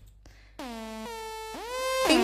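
Start of an electronic dance track: after a short silence, a synthesizer note slides down in pitch about half a second in, and a second falling note joins near the end as the track builds.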